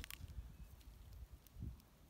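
Wind buffeting a phone's microphone: a faint, uneven low rumble, with one short louder gust about one and a half seconds in.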